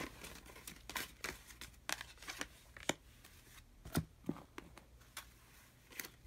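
Tarot cards being handled and laid down on a cloth-covered table: faint, scattered clicks and light rustling, roughly one snap a second.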